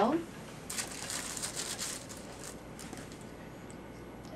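Crinkling and rustling handling noise for about a second and a half, as the conductor-gel bottle is picked up and brought to the ankle on a paper-covered exam table, then a few faint ticks.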